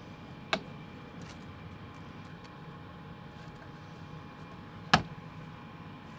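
Two sharp clicks of plastic petri dishes being set down on a stainless steel bench, about four seconds apart, the second louder, over steady fan noise.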